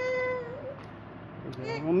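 A high-pitched vocal cry, held steady for about half a second at the start, then a second cry rising in pitch near the end.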